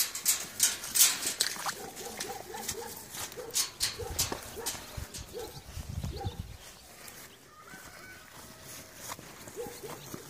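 Short, repeated calls of a farm animal, with scattered sharp clicks in the first half and a low rumble around the middle.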